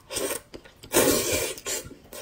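A person slurping up jajangmyeon noodles in black bean sauce: a short slurp near the start, then a longer one about a second in.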